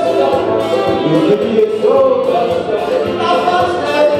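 Live acoustic music: an acoustic guitar and a cavaquinho (small four-string guitar) playing a lively tune with voices singing along.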